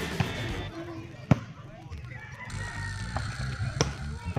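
A volleyball being struck by hand: one sharp slap about a second in, with fainter hits near the start and near the end, over players' voices.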